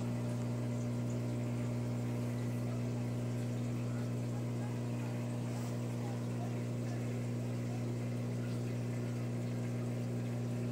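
Steady electric hum of running aquarium pumps, with faint bubbling water from the tank's filtration.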